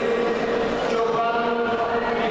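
Babble of many voices echoing through a large sports hall, with several drawn-out calls or shouts standing out over the general din.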